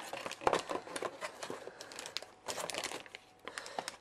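Plastic anti-static bag around a graphics card crinkling and rustling as it is handled and lifted from its packaging, in irregular bursts of crackle that die down briefly near the end.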